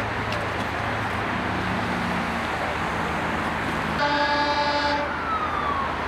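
Steady noise of freeway traffic. About four seconds in, an emergency vehicle's horn sounds for about a second, followed by a siren tone falling in pitch.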